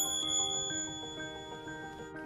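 A small bell is struck once at the start and rings on with a high, clear tone that fades over about two seconds, above soft melodic background music.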